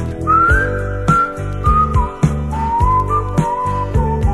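A whistled melody line, wavering up and down in a slow tune, over a soul band's backing with bass and a steady drum beat: the whistled outro of the song.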